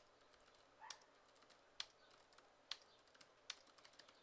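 Faint typing on a computer keyboard: scattered keystrokes, with a louder clack roughly once a second.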